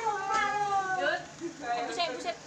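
A child's high-pitched voice holding a long, drawn-out vowel that slowly falls in pitch for about a second, followed by shorter voice sounds.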